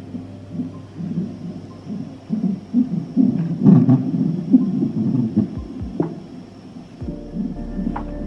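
Fetal heart monitor's Doppler speaker playing the unborn baby's heartbeat: a rhythmic whooshing pulse about two beats a second, matching the 134 beats a minute on the monitor.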